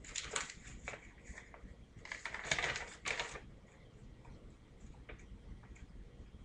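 Packaging being handled during an unboxing: two bursts of crinkling and rustling, the second, about two seconds in, the louder, followed by a few faint clicks.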